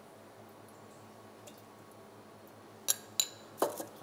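Quiet kitchen background, then near the end a few sharp clinks of a metal wok ladle against dishes and the wok, two close together and a softer one after.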